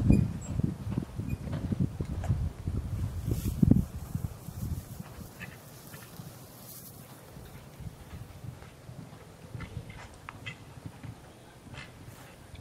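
Horse's hooves cantering on a sand arena, heavy thuds loud for the first four seconds, then fainter as the horse moves off.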